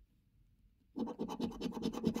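A coin scratching the latex coating off a paper scratch card. It is near silent for the first second, then a fast run of rapid back-and-forth strokes starts.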